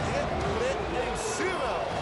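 Men's voices talking over one another from two mixed sports-broadcast soundtracks, over steady background noise; no single voice comes through clearly.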